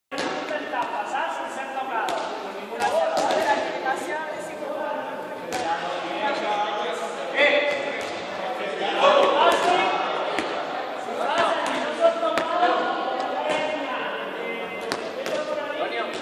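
Many people's voices chattering and calling out at once in a large sports hall, with balls thudding on the hard floor every so often.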